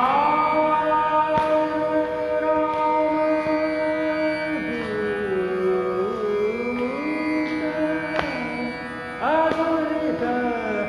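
Dhrupad singing over a tanpura drone. A long held vowel note slides down about halfway through, wavers, climbs back, and a new phrase begins near the end.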